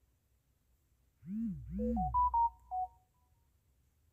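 Samsung smartphone notification tone: two quick swooping notes, then a short run of beeps that steps up in pitch and falls back, about a second and a half long.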